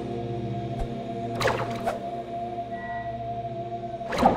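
Ambient background music of sustained, droning held tones. A swishing sound effect sweeps through about a second and a half in.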